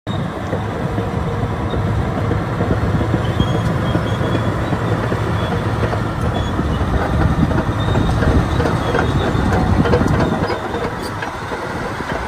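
Caterpillar D10R crawler dozer on the move: its V12 diesel engine running under load, with the steel track links clanking steadily. The sound builds a little toward the end.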